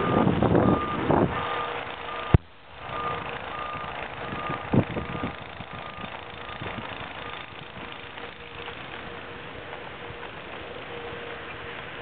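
Skis sliding over snow, a rough, uneven hiss that is loudest in the first two seconds and then settles to a steadier rush. Under it, a faint electronic beeping repeats about three times a second through the first half, with one sharp click about two seconds in.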